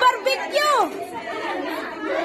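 Women chattering in a room. In the first second one voice swoops up and falls sharply, then the talk drops to quieter background chatter.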